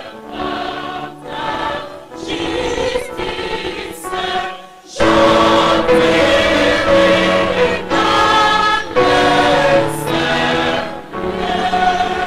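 Mixed church choir of men and women singing a Protestant hymn in sustained phrases with short breaks between them. The singing becomes clearly louder about five seconds in.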